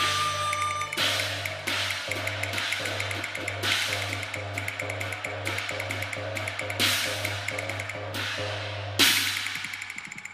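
Cantonese opera percussion playing a closing passage: rapid ticking beats with loud cymbal-like crashes that ring out every two or three seconds, fading near the end.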